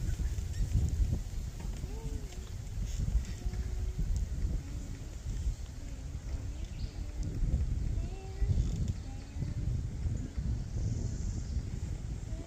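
Wind rumbling and buffeting on the microphone, with faint voices of people talking in the background.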